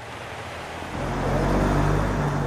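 A motor vehicle's engine running at a steady pitch, growing steadily louder.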